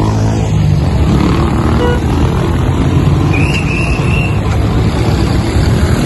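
Street traffic noise at a busy fuel station: vehicle engines running with a steady low rumble, and a short high tone about three and a half seconds in.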